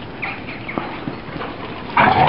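Bull lurchers and a terrier running and jostling on a wet concrete run: scattered light taps and scuffs from their feet, with a few short high squeaks in the first second.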